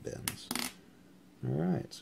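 A few short, faint clicks and rustles from fingers and metal tweezers handling a small kanthal wire coil, then a man's voice starts near the end.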